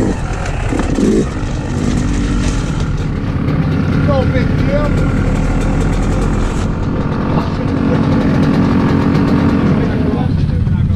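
Dirt bike engine revving briefly as it rolls to a stop, then idling steadily about a second and a half in, with other dirt bikes and ATVs idling nearby.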